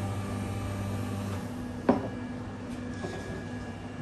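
A machine's steady low hum that cuts off about a second and a half in, followed about half a second later by a single light knock.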